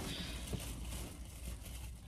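Faint rustling and crinkling of a black plastic trash bag as it is handled and tied.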